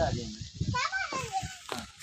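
A young child's voice talking and calling out, with other voices.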